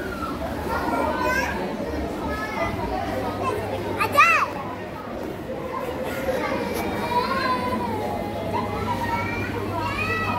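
Young children's voices chattering and calling out in a large indoor hall, with a loud, high-pitched child's squeal about four seconds in, over a steady low hum.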